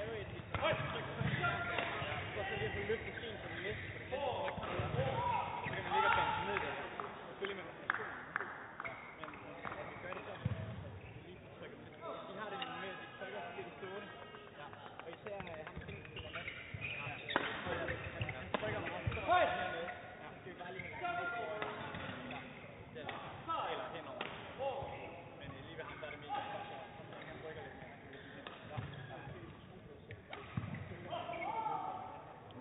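Indistinct voices echoing in a large sports hall, with scattered short knocks and thuds from badminton play on a neighbouring court.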